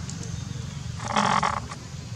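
A macaque gives a single high cry about a second in, lasting about half a second.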